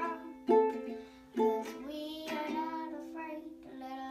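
A girl singing while strumming chords on a ukulele, with the voice held on long notes over ringing chords and a few sharp strums.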